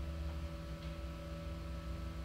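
Low, steady electrical hum: a mains-type hum under quiet room tone.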